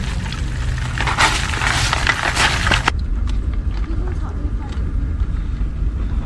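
Live crabs crawling over one another in a plastic bucket, a dense crackling rustle of shells and legs that lasts about two seconds. It then breaks off at a cut to a low steady rumble with a few faint clicks.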